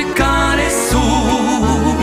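Instrumental interlude of a gospel song: accordion carrying the melody with a wavering tone over a full backing band with bass.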